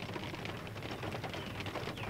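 Quiet steady background hiss with faint scattered ticking inside a car cabin.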